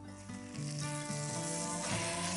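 Food sizzling in a small saucepan, the hiss growing louder about half a second in as the glass lid is lifted off.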